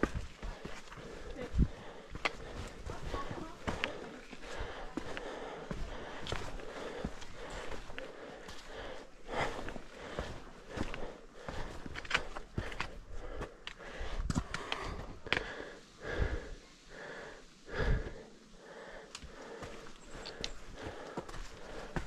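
Hiker's footsteps climbing a rocky trail, irregular scuffs and knocks on stone and grit, with breathing close to the microphone.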